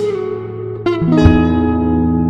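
Background music of plucked guitar notes ringing and fading, with a couple of new notes struck about a second in.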